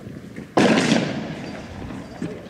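A single loud bang, a shot or blast, about half a second in, with a sharp onset that dies away over about a second.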